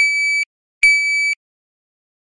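Shot timer giving two high beeps just under a second apart, each about half a second long: the start signal to draw, then the par-time beep marking the end of the time allowed for the shot.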